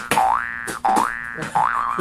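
Cartoon 'boing' sound effect played three times in quick succession, each a short rising twang.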